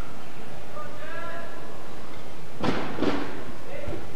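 Faint voices in the background, then two sharp thuds about a third of a second apart in the second half.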